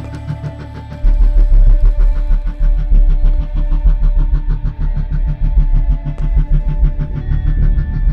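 Suspense film score: sustained tones with a heavy, deep bass that comes in suddenly about a second in and keeps up a fast, even pulse.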